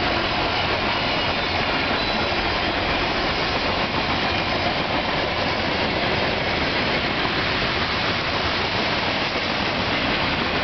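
Freight cars of a long mixed Norfolk Southern train rolling past: a steady rumble and hiss of steel wheels on the rails.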